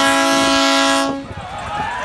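A horn sounding one long, steady, loud chord that cuts off about a second in.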